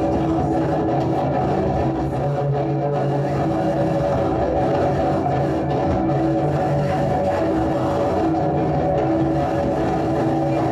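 Amplified cello making a loud, dense drone of steady held notes that does not let up.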